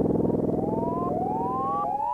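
Electronic sound effect for the hovering spheres: a series of overlapping tones, each gliding upward in pitch, starting about half a second in, over a low pulsing hum that fades away.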